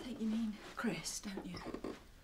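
Speech only: a person saying a line of dialogue that the recogniser did not write down.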